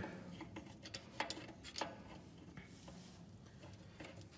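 A few faint metallic clicks, spaced under a second apart in the first two seconds, from a screwdriver turning the adjuster of a VW Beetle's front drum brake.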